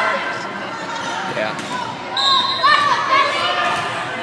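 Girls' voices cheering and chanting in an echoing gymnasium, with a ball bouncing on the hardwood floor. A short, steady whistle blast comes a little after two seconds in, the referee signalling the serve.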